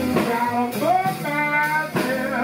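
Live blues band playing: a male singer's voice over electric guitar and drums.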